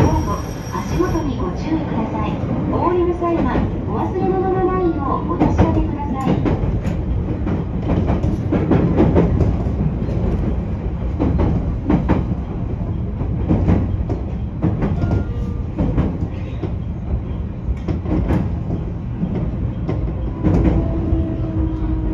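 JR Kyushu 813 series electric train running along the track, heard from the cab: a steady rumble of wheels on rail, broken by repeated clicks from the rail joints.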